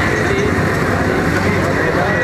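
Busy street-market hubbub: steady mixed noise of traffic with overlapping, indistinct voices of a crowd.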